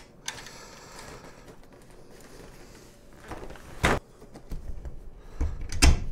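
Clamshell reflector's aluminium crossbar and frame tubes being handled and fitted together: low rustling and scraping of fabric and metal, a sharp clack about four seconds in, then two heavier knocks near the end, the last the loudest.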